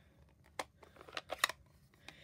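A plastic-cased stamp ink pad being opened and handled: a few short sharp clicks and taps, one about half a second in and several close together around a second and a half in.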